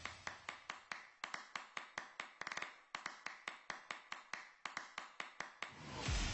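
A steady run of sharp ticking clicks, about four a second, with a quick flurry of them about two and a half seconds in.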